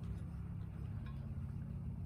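A steady low hum with no distinct clinks or knocks.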